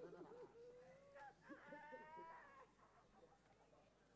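Faint human voice sounds: a few drawn-out, wavering vocal tones, the clearest and highest about two seconds in.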